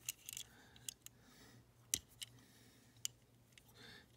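Small sharp clicks and taps of fingers and fingernails handling a 1:64 die-cast VW Bug, working at its tiny hinged opening parts; the loudest click comes just under two seconds in.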